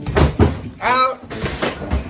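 A few heavy knocks and bumps in a kitchen, with a short voiced shout about a second in.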